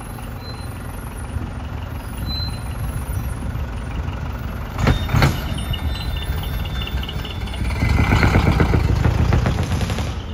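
Decorated light trucks driving out one after another, their engines running as a low steady rumble. About five seconds in there are two short sharp bursts, and near the end the engine noise grows louder as a truck passes close by.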